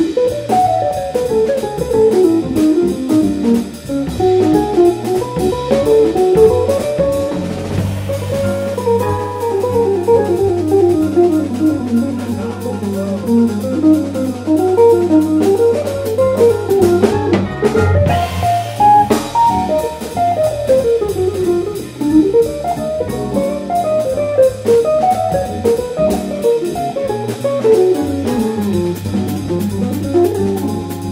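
Live jazz: an archtop electric guitar playing fast single-note solo runs that climb and fall, over drum kit and held low bass notes.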